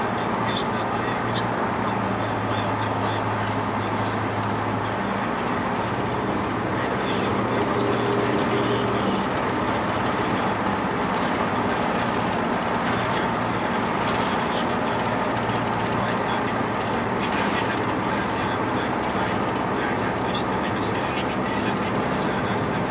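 A city bus's engine and road noise heard inside the cabin while it cruises along a road, a steady drone whose engine note shifts about five seconds in, with light clicks and rattles from the interior.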